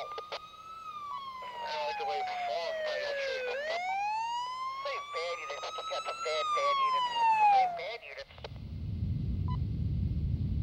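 Police car siren wailing in slow rising and falling sweeps, cutting off about eight seconds in, after which a low rumble takes over.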